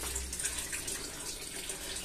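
Water pouring from a PVC return pipe into an aquaponics fish-tank drum: a steady splashing trickle onto the water surface.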